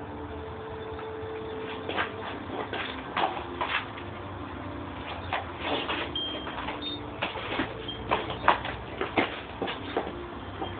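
A German Shepherd chewing and tearing a cardboard soda-can box: irregular crackles and rips of cardboard, some of them sharp and loud.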